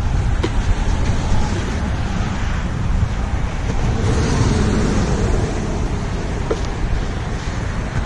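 Wind buffeting the camera microphone: a steady, loud low rumble that swells and dips without a break.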